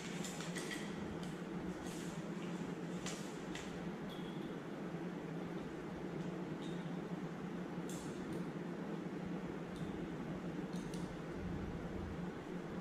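Scattered light glass clicks and taps as a glass pipette is handled with a rubber pipette bulb among glass test tubes in a wire rack, over a steady low room hum.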